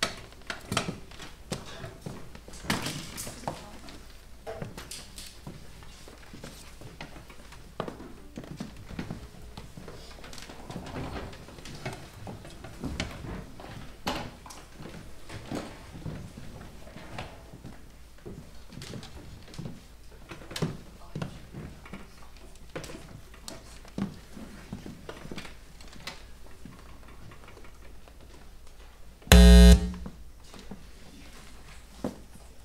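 Stage noise between pieces: scattered knocks and clicks of chairs and music stands being moved, over a low murmur. Near the end, a loud electric buzz lasts about half a second.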